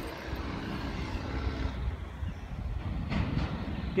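Heavy diesel truck engine rumbling with rapid exhaust pulses: a straight-piped Mack DM on its way toward the camera.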